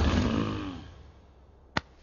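A loud rumbling whoosh that fades away over about a second, then a single sharp click near the end.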